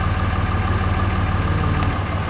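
Car engine and road noise heard from inside the cabin, a steady low rumble as the car rolls slowly along.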